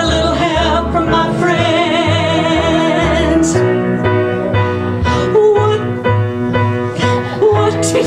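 Two women singing a duet into microphones over piano accompaniment, holding long notes with vibrato.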